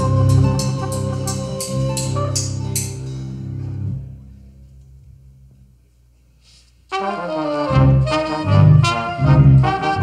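Live cumbia band with trumpet, trombone and saxophone: the band plays over quick, even percussion strikes, then fades into a brief faint pause about four seconds in. About seven seconds in the horns come back in loudly together over a pulsing bass line.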